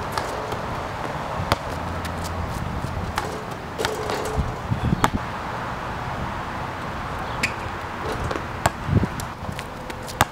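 A basketball bouncing on an outdoor hard court: several separate sharp bounces a second or more apart, over a steady background hiss.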